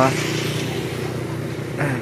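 A motor vehicle engine running nearby, a steady low hum, with a brief voice near the end.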